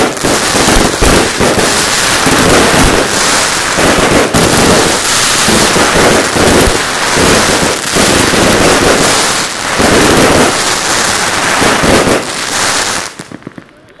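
Crackling firework cake firing crackling stars overhead: a loud, dense, unbroken crackle that lasts about thirteen seconds and stops fairly suddenly near the end.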